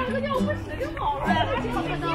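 Several people chattering, with background music of held notes playing underneath.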